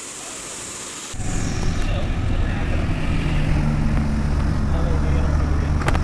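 Rushing water of the Neelam River rapids, a steady hiss. About a second in, a loud, steady low rumble with a hum sets in suddenly and covers the higher rush of the water.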